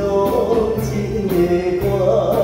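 Live band playing a slow song: drum-kit cymbal struck about twice a second over bass notes, with a man singing the melody into a microphone through the PA.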